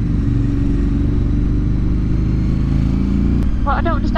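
Motorcycle engine running as the bike is ridden, its note climbing gently in pitch through the middle and changing abruptly near the end.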